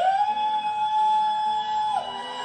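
One long held note from a church service recording, sliding up at the start, holding steady and dropping away near the end, heard through laptop speakers.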